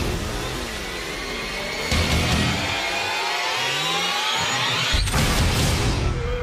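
Horror-trailer score: a dense swell of rising tones builds for several seconds and ends in a heavy hit about five seconds in, with a lesser hit near two seconds.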